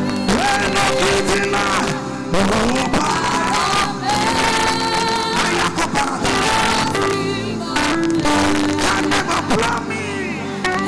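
Live gospel music: a male lead singer and backing vocalists singing over a full band.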